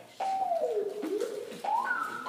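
A single whistle-like tone: it glides down, swoops back up and steps higher near the end. It most likely belongs to the recorded backing track, between two songs of the medley.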